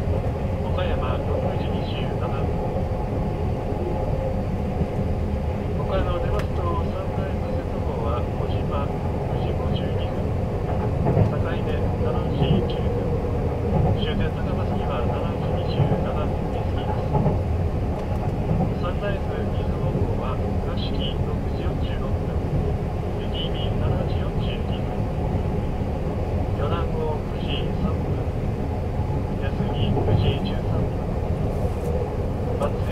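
Steady running rumble of a 285-series electric sleeper train, heard from inside a compartment. The conductor's announcement comes faintly through the compartment speaker on top of it, too quiet to make out.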